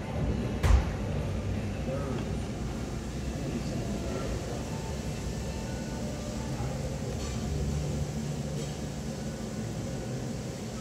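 Steady low rumble of room background noise with faint, indistinct voices, and a single sharp knock a little under a second in.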